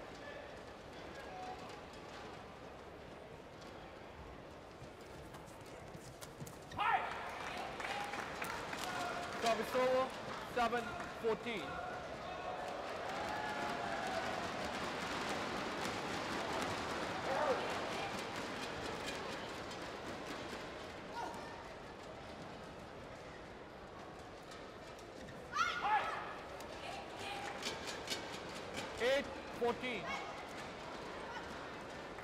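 Badminton rallies: sharp racket strikes on the shuttlecock and squeaking court shoes in two bursts, about a quarter of the way in and again near the end, with crowd noise swelling in the middle.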